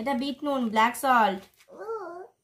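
A toddler babbling: several short vocal sounds with rising and falling pitch, a brief gap about a second and a half in, then one more shorter sound near the end.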